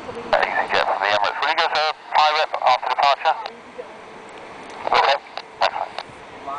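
Airband radio voice traffic through a handheld scanner's small speaker. The sound is thin and narrow-band, with one transmission from just after the start to about three and a half seconds and a second short one about five seconds in.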